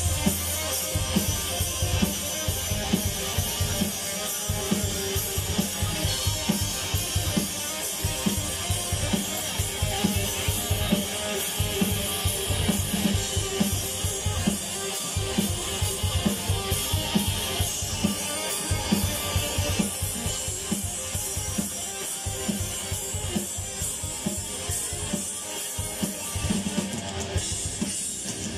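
Metal band playing live through a festival PA: distorted electric guitars, bass guitar and a drum kit with rapid, steady bass-drum strokes. It is an instrumental passage with no vocals.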